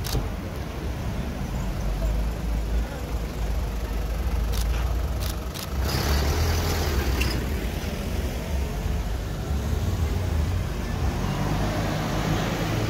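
Street traffic: vehicle engines running and passing close by as a low, steady rumble, loudest when one goes past about halfway through.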